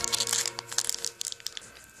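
Clear plastic sweet wrapper crinkling and tearing as it is opened by hand to get at a jelly sweet: a run of quick crackles that thin out toward the end.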